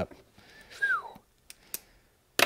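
A short whistled note gliding downward, about a second in, followed by two faint clicks.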